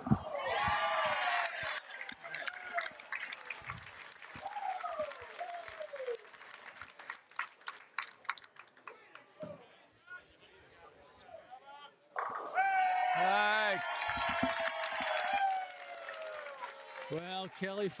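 Bowling pins crashing for a strike about twelve seconds in, followed at once by the crowd cheering and shouting for several seconds. A shorter burst of cheering comes at the very start, and scattered claps and clatter fill the quieter stretch between.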